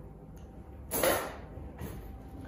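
A disposable plastic piping bag being handled and rustled, with one short sharp rustle about a second in and a fainter one near the end.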